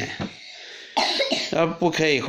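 A person's voice making speech-like sounds without clear words. It drops off briefly and comes back about a second in with a short rough burst, which may be a cough.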